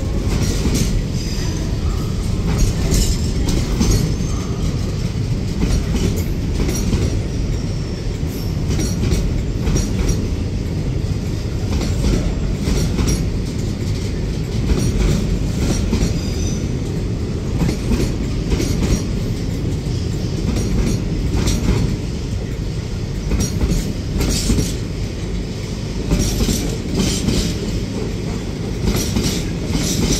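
Container freight wagons rolling past close by: a steady heavy rumble with a repeated clatter of wheels over rail joints.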